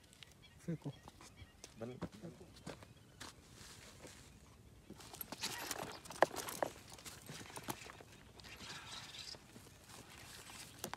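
A fishing rod being cast about five seconds in: a swish and line paying off the reel, with a run of sharp clicks, then the reel handled as the line settles. Before the cast, two short low vocal sounds and a few knocks.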